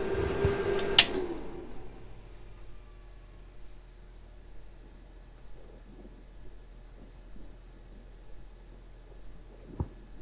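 A hard-drive backup unit (ARAID 3500 mirroring enclosure) running with its cooling fan, switched off with a click about a second in; the fan and the two spinning hard drives wind down over the next second or so. A faint low hum from the remaining equipment is left in the room.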